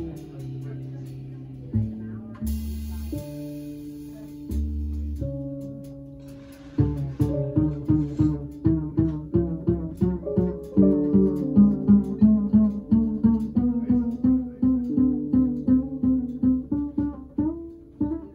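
Double bass played pizzicato in a jazz solo: a few sparse, held low notes at first, then from about seven seconds in a quick, even run of plucked notes, several a second.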